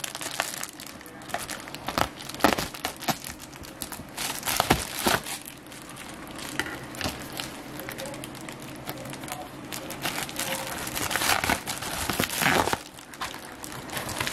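Plastic shipping mailer crinkling and crackling as it is handled and opened, in irregular crackles with a few louder ones.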